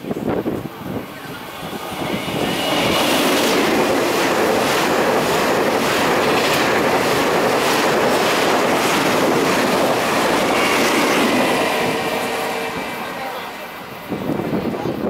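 Taiwan Railway push-pull Tze-Chiang express, twelve stainless coaches between two E1000 electric locomotives, passing through the station at speed without stopping. Its rumble builds over about two seconds, then holds with wheel clicks over the rail joints about twice a second and a high whine near the start and again near the end. It fades as the train clears the platform.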